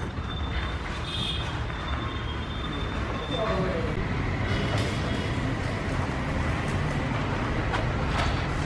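Steady low rumble of background traffic or motor noise, with faint voices in the background.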